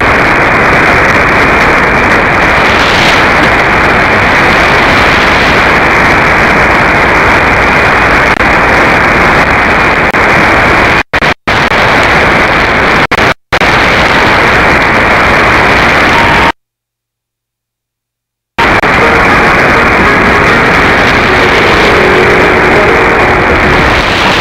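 Shortwave static from an AM receiver tuned to 9590 kHz: a loud, steady hiss and crackle from an open channel with no clear programme. It drops out briefly twice near the middle and goes silent for about two seconds, then faint steady tones begin to show through the static.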